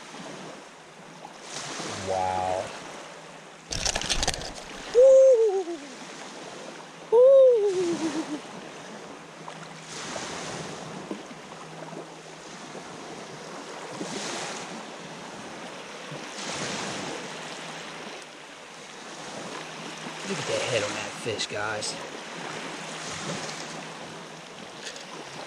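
Wind and small waves lapping at the bay shoreline, heard as a steady rush. A sharp click comes about four seconds in. Two loud, short cries that rise slightly and then fall in pitch follow a couple of seconds apart.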